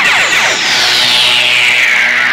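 Radio station jingle sound effect: a loud whoosh that starts suddenly and sweeps steadily down in pitch over about two seconds, over a music bed.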